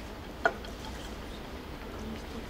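White powder being shaken from a plastic tub onto weighing paper on a digital scale while a gel is made up. There is one short sharp tap about half a second in, then only faint small ticks against a low steady background.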